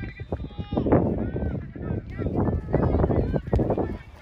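Several voices shouting and calling out across a soccer field during play, raised calls rising and falling in pitch, with a single sharp knock about three and a half seconds in.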